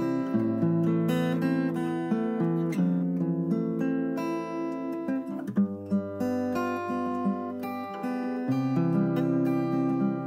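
Steel-string acoustic guitar playing a sequence of ringing chords, with a bright tone. The chords change about every three seconds, with a few quickly picked notes around the middle.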